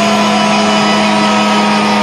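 Avant-garde metal music: a loud held, droning chord over a steady low note, its upper notes slowly sinking in pitch and dropping faster near the end.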